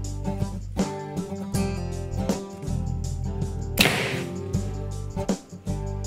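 Acoustic guitar music plays throughout; about two-thirds of the way in a compound bow is shot once, a single sharp snap as the arrow is loosed and tears through the paper tuning sheet into the target.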